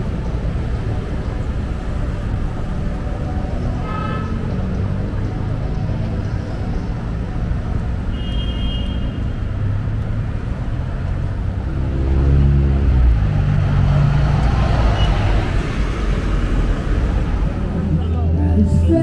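City street traffic at a crossing: cars and a bus driving past, with steady engine and tyre rumble. A louder vehicle engine passes about twelve seconds in, and there are a couple of brief high beeps earlier on.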